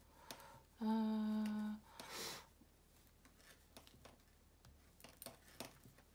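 A single hummed note held steady for about a second near the start, then faint, scattered clicks of knitting needles as stitches are worked.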